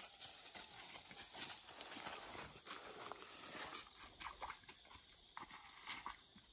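Faint, irregular hoof steps of a cow walking away over dirt and dry leaf litter, with light rustling of brush.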